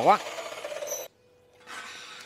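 Quiet scraping and rubbing of a flat steel bar and a tape measure being handled against the steel, with small ticks, starting past the middle.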